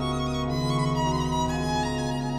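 Pipe organ and violin playing together: the organ holds long sustained chords over a steady low pedal bass while the violin plays above them.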